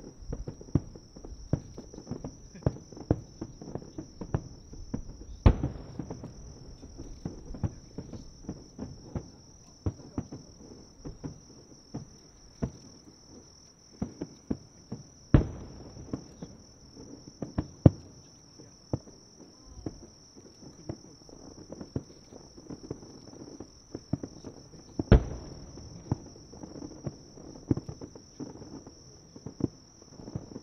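Starmine fireworks barrage: a continuous run of shell bursts popping and booming, with three much louder booms about ten seconds apart. Insects trill steadily at a high pitch underneath.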